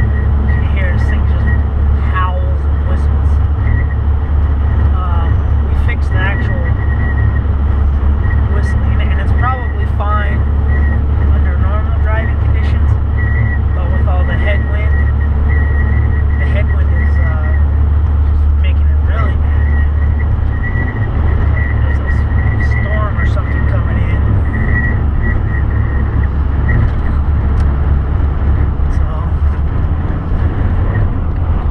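Dodge Cummins diesel pickup cruising at highway speed, heard inside the cab as a steady low engine and road drone, with a thin high whine that comes and goes.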